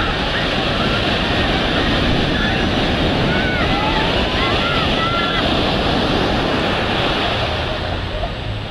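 Surf washing steadily onto a sandy beach, with distant voices and shouts of people on the beach, most of them in the middle.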